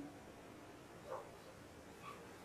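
Near silence: room tone while a marker writes on a whiteboard, with one faint, brief sound about a second in.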